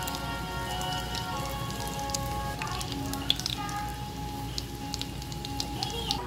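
Egg-dipped bread rolls frying in hot butter in a pan: a continuous sizzle with many small crackles and pops. Background music with sustained notes plays over it.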